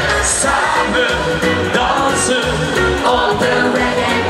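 Loud live reggae-beat pop music, with a man singing into a microphone over the band.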